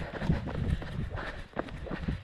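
Quick footsteps over a gravel and dry-grass bank, a run of irregular crunching steps over a low rumble.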